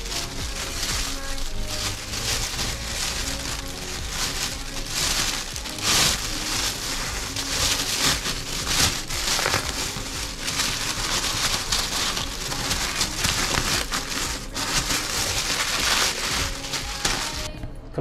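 Thin plastic bag crinkling and rustling as a cling-film-wrapped package is pushed into it and the bag is wrapped around it, over background music.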